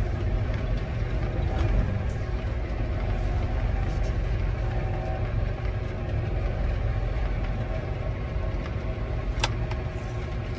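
John Deere 8330 tractor engine running steadily at low idle, heard from inside the cab as a low rumble while the transmission goes through its air-purge calibration step. A single sharp click comes near the end.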